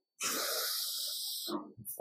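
A person blowing out one long, forceful breath, a hissing rush of air lasting about a second and a half that ends in a short low sound.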